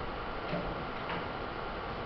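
Two faint clicks about half a second apart over steady room noise, with a short low hum between them.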